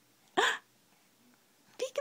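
A baby's short, sharp vocal sound rising in pitch about half a second in, then a couple of quick, clipped sounds near the end.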